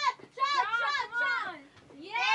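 Speech: a girl's voice chanting "Shot! Shot! Shot!".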